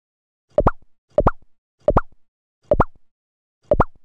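Cartoon pop sound effect repeated five times, each a short pop with a quick upward bend in pitch, spaced a little further apart each time, as pictures pop onto the screen.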